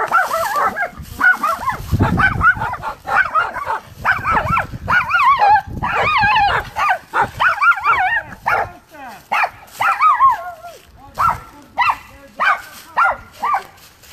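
Several dogs barking and yelping, a dense overlapping chorus of short high calls that thins near the end to single barks about two a second.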